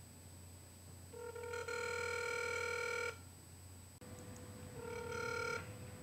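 Telephone ringback tone heard faintly through a flip phone's earpiece while a call is being placed. One ring lasts about two seconds, starting about a second in, and a second ring near the end is cut short as the call is answered.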